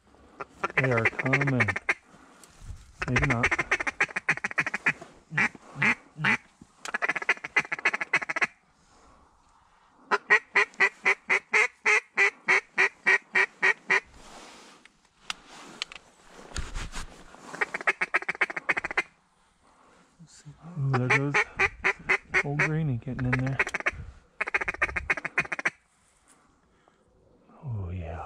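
Mallard duck calls blown by hand: long runs of rapid quacks, about four to five a second, repeated in series with short pauses between them. Lower, drawn-out call notes come in the last third.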